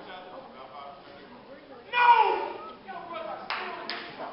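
A loud shouted call about halfway through, its pitch falling, over a low murmur of voices in a large hall; then two sharp claps close together near the end.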